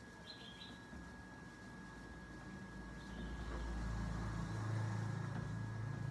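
Faint outdoor background: a low rumble that swells through the middle and stays up toward the end, like a distant passing engine, with a couple of faint chirps and a thin steady high tone.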